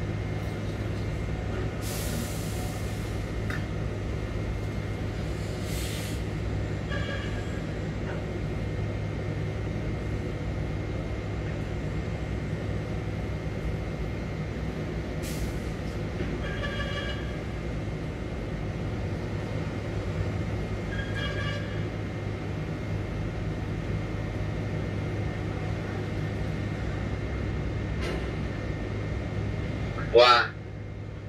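Steady low drone of a grab crane's machinery, heard from above in the crane, while a grab loaded with bulk grain hangs over the ship's hold. A few short hisses and three brief runs of beeps break in over the drone.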